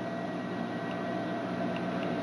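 Steady room tone: an even hiss with a faint hum, from fans running in the room.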